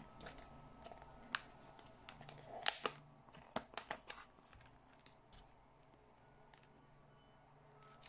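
Faint clicks and taps of a clear plastic storage case being handled, the plastic knocking against fingernails and the box; they come scattered through the first half and die away to quiet room tone.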